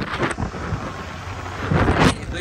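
Wind rumbling and buffeting on the phone's microphone on a moving motorcycle, growing louder in a gust near the end.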